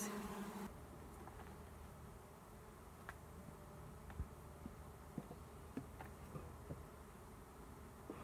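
Honeybees buzzing close by with a steady low drone that cuts off abruptly under a second in. Then it falls quiet, with a faint low hum and a few light knocks.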